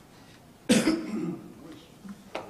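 A man's single cough close to a handheld microphone, about two thirds of a second in, with a short rasping tail like a throat clearing.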